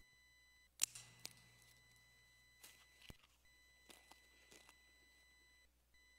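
Near silence with a faint steady high-pitched electronic tone, broken by a few soft clicks and rustles from the priest handling the altar vessels, the sharpest click about a second in.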